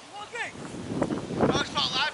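Distant crowd of spectators shouting across an open playing field, several voices overlapping. It grows louder in the second half, with high-pitched calls.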